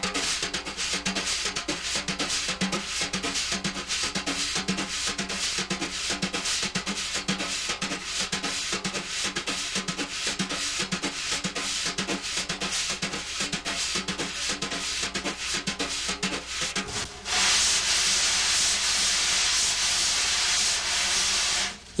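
Wire brushes on a snare drum playing the Gallop pattern in cut time, both hands together: the left hand sweeps up and down across the head while the right hand taps a quick galloping rhythm. Near the end the strokes give way to about four seconds of steady hiss.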